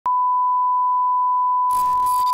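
A single steady electronic beep tone, like a censor bleep, starts with a click and holds one pitch; about three-quarters of the way in, crackling digital glitch static joins it.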